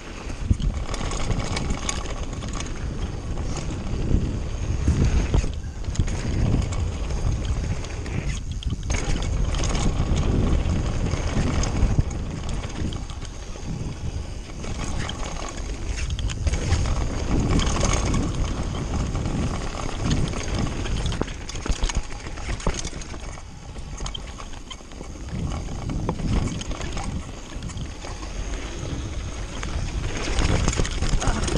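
Mountain bike descending a dirt and gravel trail: wind buffeting a rider-carried camera's microphone, with tyres rolling over dirt and the bike rattling over bumps, rising and falling in loudness with speed.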